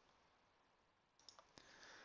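Near silence, broken about a second in by a few faint clicks from a computer mouse or keyboard as a spreadsheet formula is entered.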